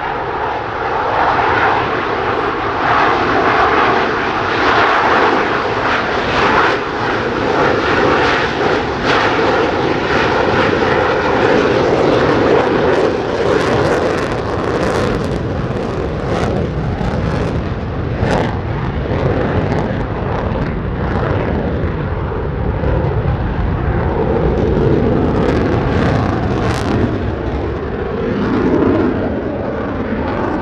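Jet noise from two Blue Angels F/A-18 Super Hornets, each with twin General Electric F414 turbofans, running loud and steady through a slow, high-angle-of-attack pass. Sharp crackles break through the roar about halfway and again near the end.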